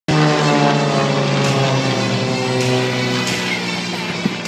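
Propeller aerobatic plane flying past, its engine drone sliding slowly down in pitch and fading a little as it moves away.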